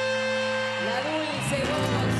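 Live chamamé band holding the final chord of a song, then a short sliding flourish about a second in as the piece closes.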